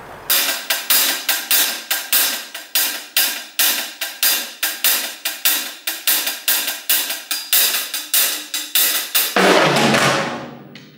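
Drum kit played in a steady beat of about three strokes a second, cymbals ringing on each stroke, ending on a louder crash that rings on near the end.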